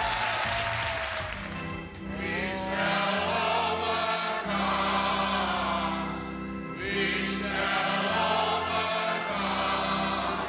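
Church congregation singing a slow hymn together in unison, with long held notes in drawn-out phrases.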